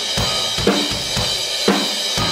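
Heavy metal drum kit played in a steady beat, a hard kick-and-snare hit about every half second under ringing cymbals.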